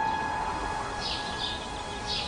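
A held note of piano music dies away under a steady background hiss, and a couple of short bird chirps come in about a second in.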